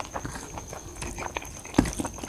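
Fingers mixing rice and brinjal curry on a steel plate: a string of small soft clicks and squelches, with one sharper knock near the end.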